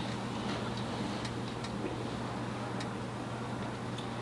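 A few faint, irregularly spaced light clicks and taps from papers being handled on a wooden lectern, over a steady low room hum.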